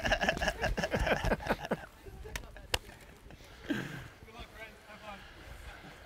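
Men laughing and talking, dying away, then two sharp knocks about half a second apart, followed by a brief faint voice.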